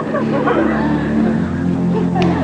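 Live stage-musical sound: the orchestra holds a low chord, deepening about one and a half seconds in, while performers' voices sing over it.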